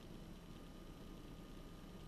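Quiet room tone: a faint steady hiss with no distinct events.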